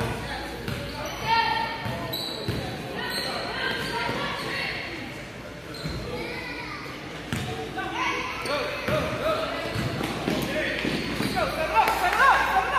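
A basketball bouncing on a gym floor during a game, with shouting voices echoing around a large gym.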